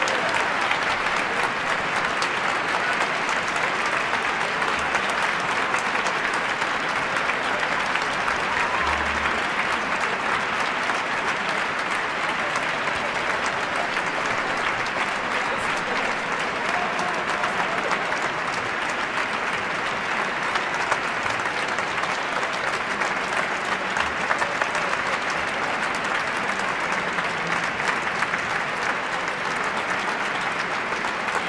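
Audience applauding steadily, a dense even clapping of many hands.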